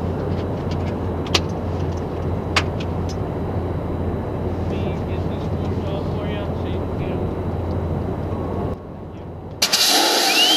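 Steady low drone of jet aircraft machinery running on a flight line, with two sharp clicks in the first few seconds and faint voices around the middle. Shortly before the end the drone cuts off and a much louder rushing noise begins.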